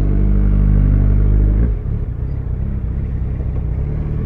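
Yamaha FZ1N's inline-four engine running at steady revs as the bike rides slowly along stopped traffic. About a second and a half in, the note drops and turns rougher and uneven.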